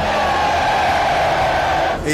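A large crowd cheering and shouting: a dense, steady wash of many voices.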